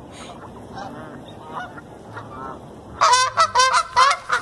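Canada geese honking: a few faint calls, then about three seconds in a sudden loud run of rapid, repeated honks, about four a second, from a goose close by.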